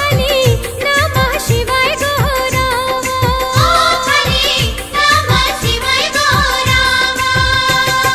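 Devotional Bhojpuri Shiv bhajan music: a melody with wavering, ornamented bends over a steady drum beat.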